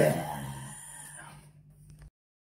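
Final low note of a distorted electric guitar at the end of a death metal song, ringing out and fading away over about a second and a half.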